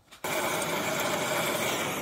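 A loud, steady whirring noise that starts abruptly just after the start and cuts off suddenly at the end.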